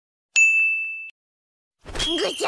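A single high-pitched ding sound effect: a bell-like chime that starts sharply about a third of a second in and fades away within a second.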